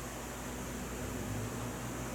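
Steady room tone: a low hum under an even hiss, with no distinct events.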